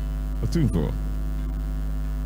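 Steady low electrical mains hum with a buzz of overtones, with one short spoken word over the microphone about half a second in.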